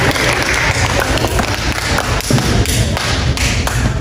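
Audience of students applauding, the clapping thinning out to a few separate claps in the last couple of seconds.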